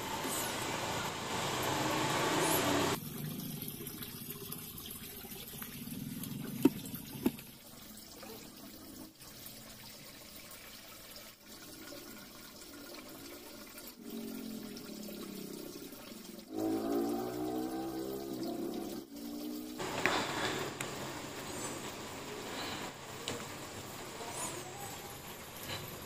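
Water from a garden hose pouring and splashing into a small glass aquarium as it fills. It is loudest in the first three seconds, then goes quieter, and the sound changes abruptly a few times.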